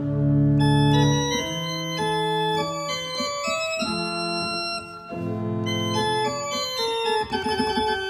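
Organ playing: a loud opening chord over a deep pedal bass, then a melody of separate, clearly detached notes over held chords.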